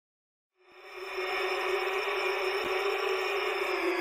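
Intro sound effect: a sustained synthetic drone that fades in under a second in and holds steady, its tones drifting slowly lower.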